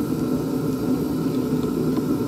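Steady low whir of a loud heater running in the workshop, drowning out the small screwdriver work on the bench.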